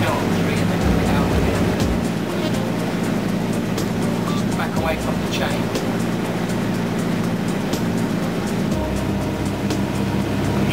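Motor cruiser's engine running steadily under way, a constant low drone.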